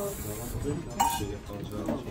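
A single sharp metallic clink with a short ring about a second in, as a copper cezve (Turkish coffee pot) is set down on the stove, with quiet talk around it.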